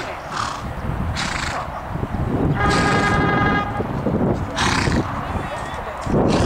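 A steady electronic tone, about a second long, sounding once midway: typical of the start signal for a showjumping round. It sits over a low rumble.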